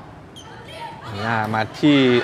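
Indoor volleyball rally: a brief sharp ball contact or shoe squeak about a third of a second in over low arena crowd noise, then a male commentator's voice from about a second in.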